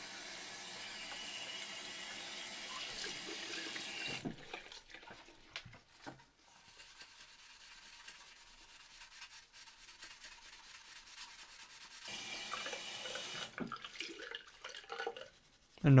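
A water tap running into a ceramic bathroom sink for about four seconds while a plastic part is rinsed, then it stops. Quieter, irregular rubbing and scraping follows as the wet plastic case is scrubbed with a melamine sponge (magic eraser), with another short spell of rushing water about twelve seconds in.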